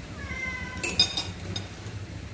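A domestic cat meows once, a drawn-out call falling slightly in pitch, begging for food. Just after, a spoon clinks several times against a bowl.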